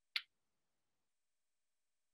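A single short, sharp click just after the start, with near silence around it.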